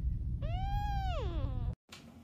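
Young kitten giving one long meow about half a second in, rising, holding, then falling away, over a steady low rumble. The sound cuts off abruptly near the end.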